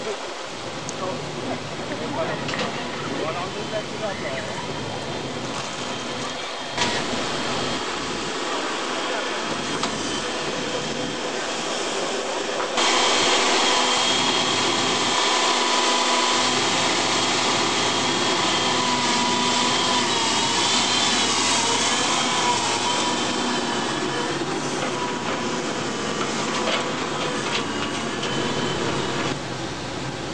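Background voices at first. Then, after a cut less than halfway in, a tracked excavator runs with a steady high whine that wavers briefly as its grab bucket scoops up piles of plastic rubber ducks.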